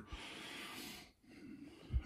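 A person drawing a breath, a soft airy sound lasting about a second, followed after a short gap by fainter breath noise.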